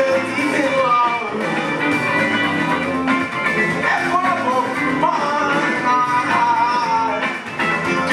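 Live rock band playing: electric guitar, bass guitar and drum kit through the PA, with a wavering melodic line over the chords.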